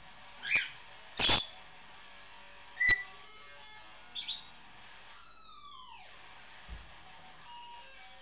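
A grey parrot chattering: a run of short whistles and squawks, the loudest about a second in and a sharp whistle near three seconds, then a long falling whistle about five seconds in. Faint electric guitar through effects pedals plays underneath.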